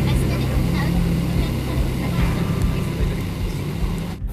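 Cabin noise of a jet airliner taxiing after landing, heard from inside: a steady low rumble of the engines and airframe.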